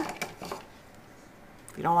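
A few faint, light clicks and knocks of kitchen things being handled on a wooden counter in the first half-second, then quiet room tone until a woman's voice returns near the end.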